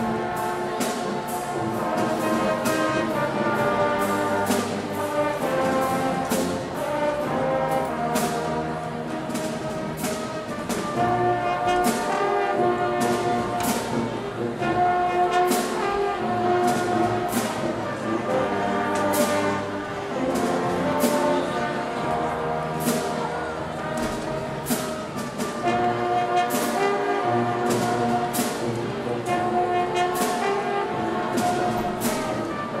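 High school marching band playing: trumpets, saxophones and other brass holding chords and moving lines over a steady beat of percussion hits.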